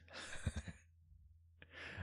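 A man breathing out in a sigh, then a short breath in near the end, just before he laughs.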